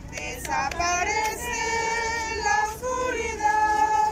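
A group of women singing a hymn together, holding long notes.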